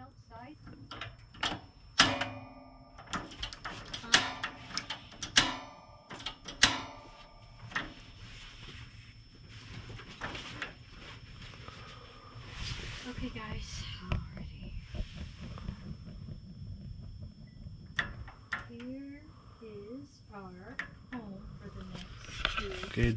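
Portable propane heater being lit: a run of sharp clicks and knocks as its knob and igniter are worked, then a soft hiss.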